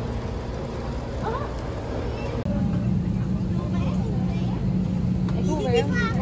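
Steady low rumble of a coach's engine idling. About two and a half seconds in it gives way to a louder, steady airliner cabin hum, with voices near the end.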